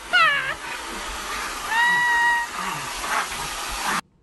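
French bulldog crying at a blowing hair dryer: a quick run of short yelps that fall in pitch, then one long, steady, high whine about two seconds in, over the hair dryer's steady rush of air.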